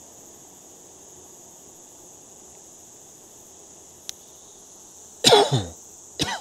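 A person coughs once, loud and harsh, about five seconds in, over a steady high chorus of night insects such as crickets.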